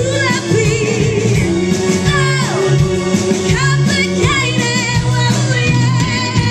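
Female vocal trio singing a 1960s-style girl-group song in harmony over a live band, the voices swooping down in pitch twice.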